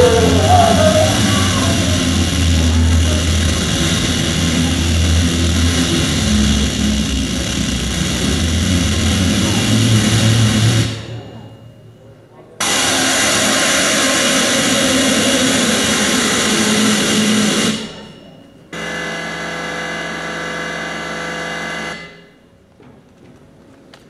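Loud pre-recorded soundscape played through a theatre's sound system: a dense roar with a deep rumble underneath. It cuts off abruptly near the middle, returns, and stops again. A quieter drone of steady tones follows near the end.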